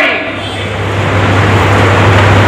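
A steady low hum with a broad rushing rumble under it, growing a little louder through the pause in speech.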